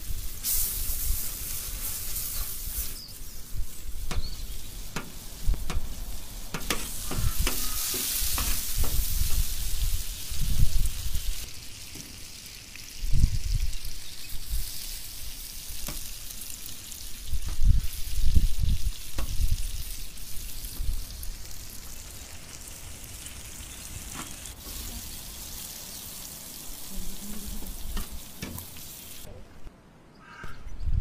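Butter and eggs sizzling on a hot metal griddle over a fire, with dates frying in the bubbling butter and a spoon stirring and scraping among them. There are occasional low bumps and scattered short clicks.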